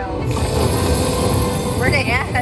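Aristocrat slot machine's bonus sounds: a steady electronic tone held while the reels spin, with a warbling chime figure coming in near the end, over a low casino rumble.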